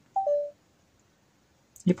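Blackview BV7100 smartphone camera app's video-recording tone: two short electronic beeps, the second a little lower, as recording is switched on or off.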